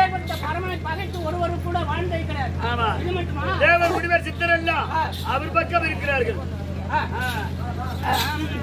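A man's voice speaking in long rising and falling phrases, over a steady low electrical hum.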